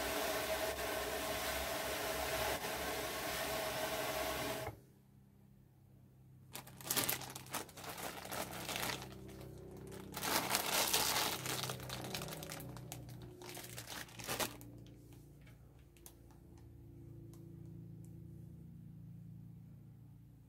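Ashford drum carder being hand-cranked, its drums turning with a steady whir that stops abruptly about five seconds in. Then several bursts of crinkling and rustling as fibre is handled.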